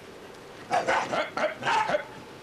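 A dog barking several times in quick succession, starting a little before halfway through.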